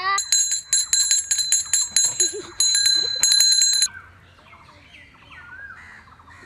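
Bicycle bell on a tricycle cart rung rapidly, about four rings a second, for nearly four seconds before stopping abruptly. Faint bird chirps follow.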